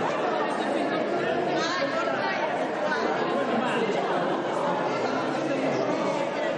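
Many people talking at once in a large hall: overlapping, indistinct conversation chatter at a steady level, with no single voice standing out.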